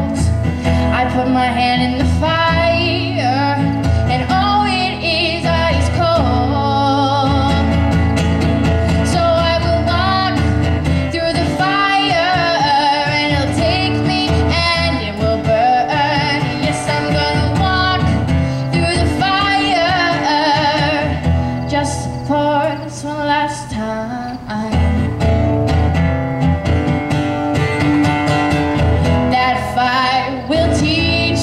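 A young girl singing a slow original song with wavering held notes while playing a steel-string acoustic guitar. The song eases briefly about two-thirds of the way through.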